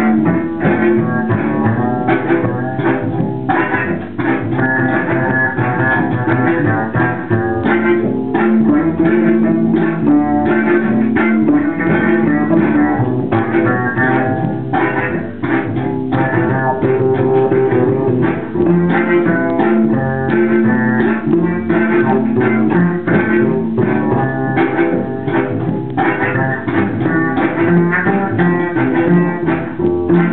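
Double bass played pizzicato with many plucked notes, layered over its own repeating loops from a looper pedal.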